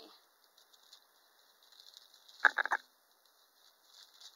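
Thin clear plastic bag crinkling and rustling as vinyl doll parts are handled inside it. Light rustles run throughout, with a louder, brief cluster of crinkles about two and a half seconds in.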